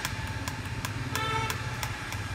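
An electric doorbell rings briefly, a short steady tone about a second in, over a steady low rumble and a string of light clicks.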